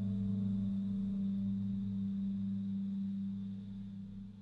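Electro-acoustic music: a sustained low drone holding one steady pitch, with a faint high tone above it, easing slightly in level near the end.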